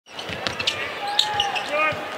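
A basketball dribbled on a hardwood arena court during live play, with a few short high squeaks, over arena crowd noise. A voice calls out near the end.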